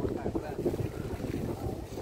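Strong gusty wind buffeting the microphone in an uneven rumble, with faint voices of people talking underneath.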